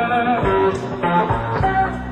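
Live electric blues band playing a slow blues, with a lead electric guitar fill of short bent notes between the sung lines.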